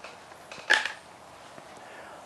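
A single short, sharp noise a little under a second in, against quiet room tone.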